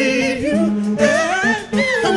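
Live soul singing: a male lead voice holds and bends notes with vibrato, with backing singers under him and the band's bass mostly dropped out, so the voices stand nearly bare.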